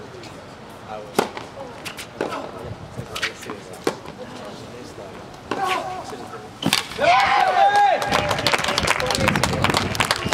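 A tennis rally: a serve, then racket strikes on the ball about once a second, each a sharp pop. About seven seconds in, the point ends in a loud shout, followed by clapping from the spectators.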